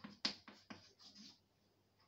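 Chalk writing on a blackboard: a quick run of taps and short scratches for about the first second and a half, then it stops.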